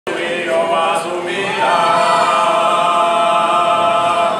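Men's voices singing a gospel song a cappella in harmony, settling into a long held chord about one and a half seconds in.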